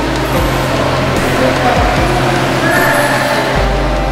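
Loud steady noise with a low hum, with faint voices and music mixed in.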